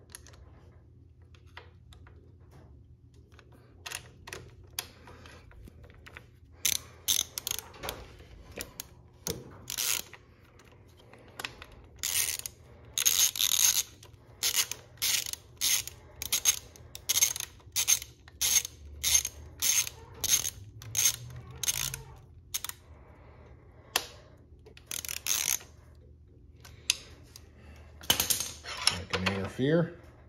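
Socket ratchet wrench clicking in repeated short strokes, about one and a half a second through the middle, as it drives in a small screw.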